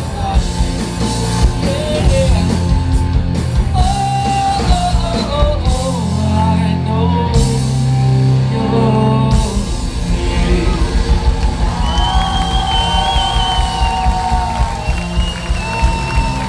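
Live rock band playing, with electric guitars, bass, drums and a male lead vocal singing held notes. About six seconds in, the drums drop out for a few seconds, leaving sustained guitar and bass; then the full band comes back in.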